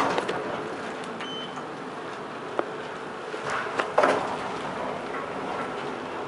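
Otis Gen2 traction elevator car running: a steady hum, a sharp click about two and a half seconds in, and a couple of knocks around four seconds in.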